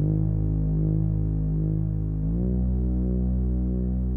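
Background music: low, sustained synth chords with no beat, moving to a new chord a little over two seconds in.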